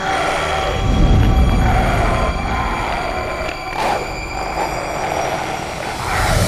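Eerie suspense score and sound design: a low, rumbling drone with thin, steady high tones held over it, and a whoosh about four seconds in.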